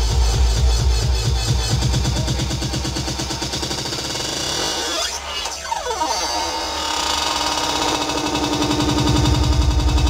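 Electronic dance music from a DJ set, played loud over a festival sound system and heard from the crowd. A steady pounding kick drum leads. About five seconds in the bass drops away briefly and a sweep rises in pitch, then the heavy beat comes back.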